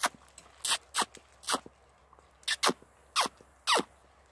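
A man making squeaky bird-calling sounds by drawing air in through pressed lips to attract small songbirds. There are about seven short, shrill squeaks at uneven spacing, several sliding down in pitch.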